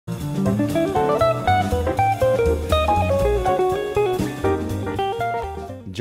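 Jazz guitar playing a fast run of single notes over walking bass and drums, fading out near the end.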